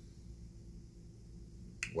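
Quiet room tone with a low steady hum, then one short sharp mouth click near the end as the lips part just before speaking.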